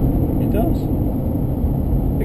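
Steady engine and road noise heard from inside a small car's cabin while it is being driven, with a short bit of a voice about half a second in.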